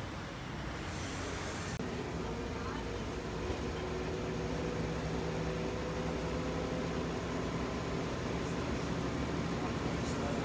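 Street traffic noise at a bus stop, then, about two seconds in, the inside of a moving city bus: a steady engine and road hum with a few held droning tones.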